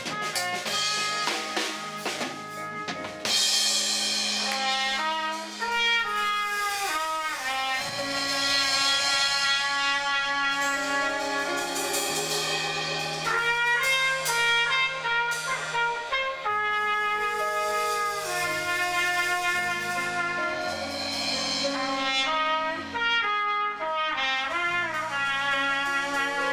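Small live band playing: drum kit and electric bass, with a trumpet carrying the melody. The first three seconds or so are mostly drums, then the trumpet line comes in and runs on over the bass and drums.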